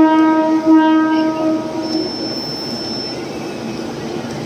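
Mumbai suburban electric local train's horn holding one long note as the train pulls in alongside the platform, cutting off about two seconds in. A thin, high, steady squeal follows for about a second over the rumble of the train.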